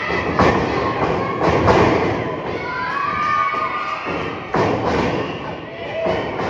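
Heavy thuds of wrestlers' bodies hitting the ring, several sharp impacts with two close together about a second and a half in. Crowd shouting and voices carry on between them.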